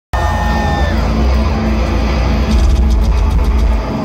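Heavy live metal band playing loud through a festival PA, recorded from within the crowd: a dense, bass-heavy wall of sound with quick drum hits in the second half that stops near the end.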